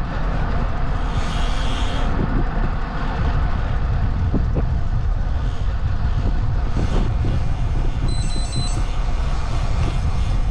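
Wind buffeting the microphone and tyre-on-road noise while riding a bicycle, a steady loud rush. About eight seconds in, a quick run of high electronic beeps.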